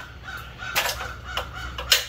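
Birds calling: one bird repeats a short chirp about four times a second, and two louder, harsh calls cut in, one a little under a second in and one near the end.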